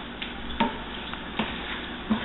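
Wooden spoon stirring a ground meat and tomato sauce mixture in a skillet, with a few soft knocks and scrapes of the spoon against the pan.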